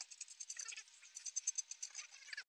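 Light metallic clicking and rattling as lug nuts are threaded by hand onto the studs of a spare donut wheel, many quick irregular clicks.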